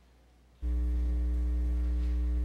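Near silence, then a little over half a second in a loud, steady electrical mains hum cuts in abruptly and holds: a low hum with a buzzy stack of higher tones above it.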